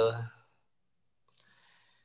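A person's voice finishing a spoken "thank you", then near silence with one faint click and a short soft hiss about a second and a half in.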